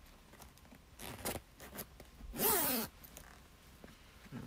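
Metal zipper of a leather shearling vest being zipped up: soft rustling of the garment, then one loud zip about two and a half seconds in.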